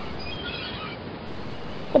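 Steady background noise in a pause of the singing, with a few faint high chirps about half a second in.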